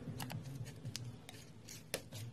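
A palette knife scraping and dabbing thick paint on paper in a series of short, crisp scrapes, with one sharper click near the end.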